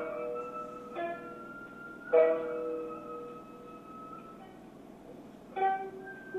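Japanese traditional dance music on a plucked string instrument. Single plucked notes sound about a second in, just after two seconds and near the end, each ringing on and fading away.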